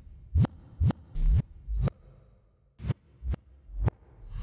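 Yamaha PSR-EW425 keyboard voice played as separate short notes from the keys: seven percussive hits, each a deep thud with a brief bright sweep. They come about two a second, with a pause of nearly a second midway.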